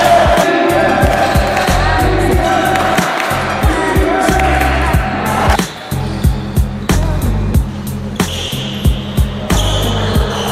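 Backing music with a steady, heavy beat. It drops away briefly just before six seconds in, then the beat picks up again.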